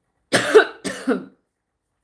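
A woman coughing twice into her fist, the two coughs about half a second apart.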